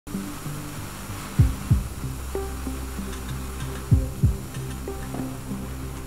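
Suspense score: a steady low drone and held low notes, with a heartbeat-like double thump twice, about two and a half seconds apart.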